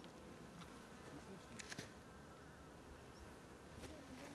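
Faint buzzing of honeybees, with a few soft clicks about one and a half seconds in.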